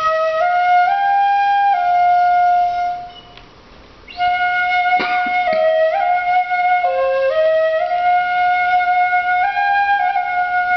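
Two shinobue, Japanese bamboo transverse flutes, playing a slow melody together in long held notes that move up and down in small steps. The phrase breaks off about three seconds in and starts again a second later, with a short sharp accent around five seconds in.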